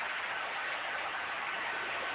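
Steady, even background din of a show hall, a hiss-like noise with a faint thin high tone and no distinct events.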